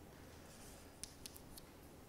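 Near silence: room tone, with a few faint ticks of a sheet of paper being handled about a second in.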